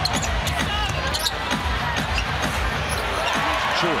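Basketball dribbled on a hardwood court, with repeated sharp bounces and short high squeaks of sneakers over steady arena crowd noise.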